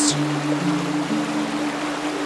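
Background music: held low notes come in one after another, about half a second apart, building a chord over a steady rushing-water hiss.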